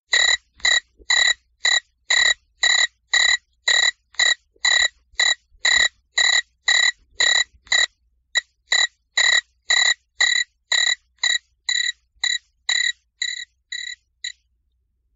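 An animal-like call, short and repeated evenly about twice a second, with one brief gap about eight seconds in.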